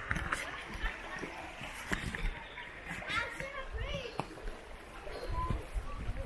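Indistinct voices over the steady rush of a shallow stream, with footsteps on a dirt path.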